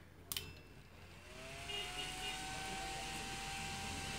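A home UPS inverter switching on from a 12-volt supply after repair. A click comes about a third of a second in. From about a second in, a whir rises in pitch over roughly a second and then runs steadily, like a small cooling fan spinning up.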